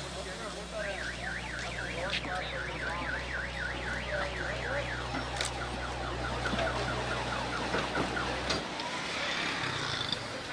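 A warbling electronic siren or alarm, rising and falling about three to four times a second for about five seconds and then fading. Under it runs the steady low rumble of the excavator's diesel engine, which drops away near the end.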